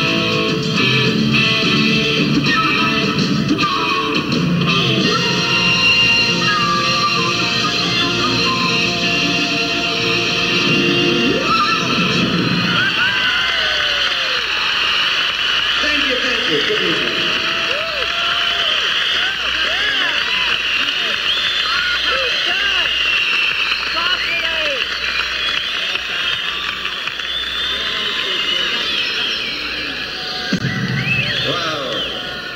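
Live rock band playing the final bars of a song, electric guitar to the fore, stopping about twelve seconds in. An arena crowd then cheers, whistles and applauds.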